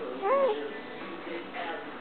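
A single short, high-pitched call, about a third of a second long, that rises and then falls in pitch. It sounds over faint background voices.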